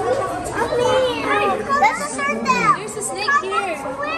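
Young children's high voices chattering and calling out over one another.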